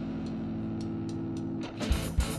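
Steady low drone from the band's amplified instruments, with a few light ticks. Near the end the drums and electric guitars come in with a loud hit as the song starts.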